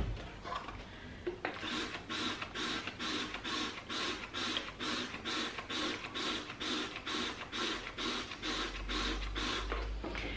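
A trigger spray bottle of glass cleaner squeezed over and over, squirting into a small plastic bottle. The squirts start about a second and a half in and come evenly, about three a second.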